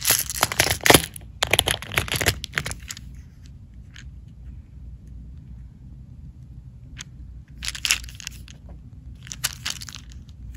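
Clear plastic storage compartments of small nail charms being handled, the charms rattling against the plastic in clattering bursts: a long one at the start, shorter ones near the end, with a few single clicks between.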